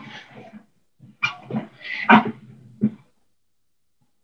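A dog barking: about four short barks in quick succession over a second and a half.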